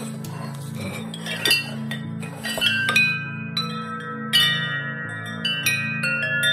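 Thick-walled aluminium tubes of a large 41-inch wind chime clinking and ringing as the chime is lifted out of its box, the tubes knocking together in a string of strikes that leave several overlapping ringing notes.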